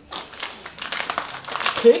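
Crinkling and rustling of a cardboard advent calendar door being pulled open and a small wrapped packet of cookies taken out, a fine, crackly sound of irregular ticks, with a short spoken word near the end.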